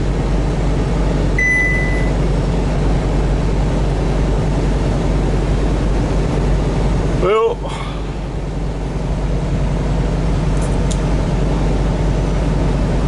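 Steady in-cab drone of a Kenworth T680 semi truck cruising at highway speed, with diesel engine hum and road noise. About a second and a half in, a single short electronic beep sounds.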